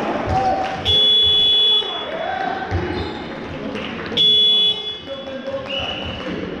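Referee's whistle blown twice: a loud shrill blast about a second long, starting about a second in, and a shorter one about four seconds in.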